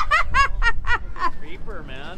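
A person giggling under their breath: a quick run of short, high-pitched snickers that fades out about a second in.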